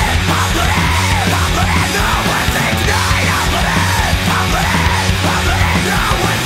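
Loud, aggressive heavy rock song with a steady, dense low end and a yelled vocal line over it.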